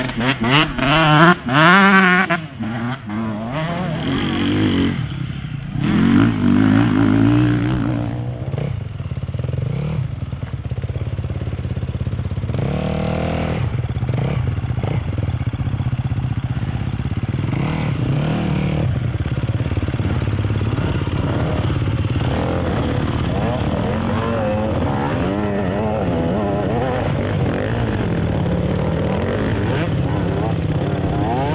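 Enduro dirt bike engines revving hard as the bikes pass close by, the pitch climbing and dropping with each gear and throttle change, loudest in the first three seconds with further close passes around six and thirteen seconds in. Between the passes, a steady drone of motorcycle engines running further off on the course.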